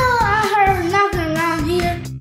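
A children's song: one voice sings a held line that drifts slowly down in pitch, over a backing track with a steady beat.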